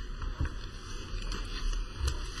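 Meeting-room background noise: a steady low rumble with a few faint knocks and clicks, the clearest about half a second in.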